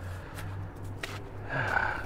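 A few faint clicks of handling over a low steady hum, then a long breathy exhale, a sigh, in the last half-second.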